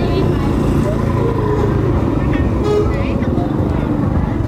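A motorbike's engine running as it rides past close by, over a steady mix of voices and street noise.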